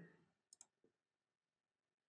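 Near silence: faint room tone, with one faint click about half a second in.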